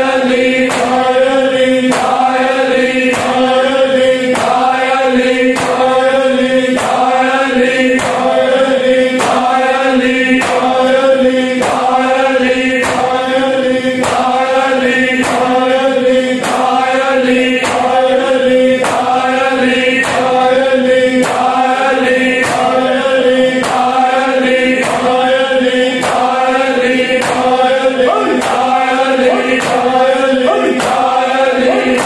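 Group of men chanting a Punjabi noha in unison over a steady held drone. Rhythmic chest-beating (matam) keeps time with it, about three beats every two seconds.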